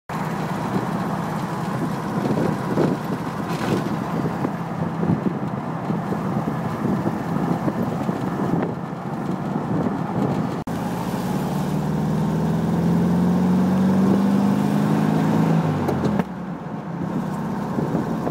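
Volkswagen Thing's air-cooled flat-four engine running as the open car drives, with wind rushing past. Midway the engine note climbs steadily for several seconds under acceleration, then drops suddenly about two seconds before the end, as at a gear change.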